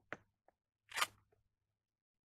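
Handling noises close to the ground: a sharp click, then a short scraping rustle about a second in, with a faint tick after it, as a small plastic lure bottle and dry leaves are handled.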